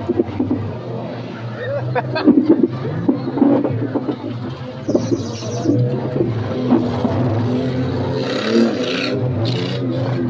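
Car engine noise heard from inside a beater race car's cabin, a steady low drone with shifting pitch. Knocks and rattles come about two seconds in, and short bursts of hiss come about five and nine seconds in.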